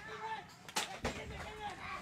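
Distant shouting voices with one sharp bang about three-quarters of a second in and a smaller crack a moment later.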